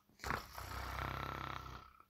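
A man's long, low, rough groan, held for well over a second.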